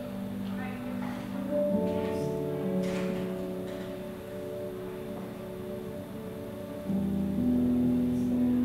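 Soft, slow keyboard chords held for several seconds each, moving to a new chord about two seconds in and again near the end.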